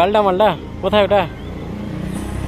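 Speech: a voice says two short phrases, over a low steady rumble.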